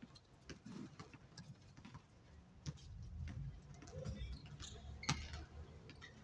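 Pickup basketball game on an outdoor hard court: scattered, irregular sharp taps and thuds from the ball and players' sneakers, the loudest about five seconds in, over a low background rumble.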